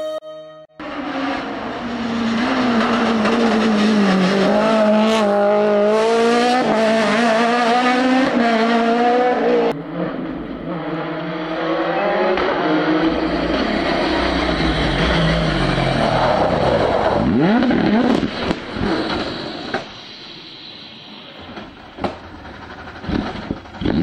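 Rally car engines running hard on a special stage, including a Hyundai i20 rally car's. The revs rise and fall through gear changes, the sound changes abruptly about ten seconds in, and pitch falls as a car passes later on.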